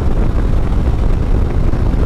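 2021 Harley-Davidson Street Bob 114's Milwaukee-Eight V-twin running steadily at highway cruising speed, mixed with wind rushing over the microphone.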